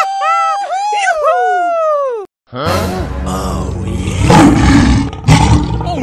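Cartoon sound effects for the gorilla characters: a high, squeaky voice-like call gliding up and down, then after a brief silence about two seconds in, long rough animal roaring with a deep rumble, in two stretches.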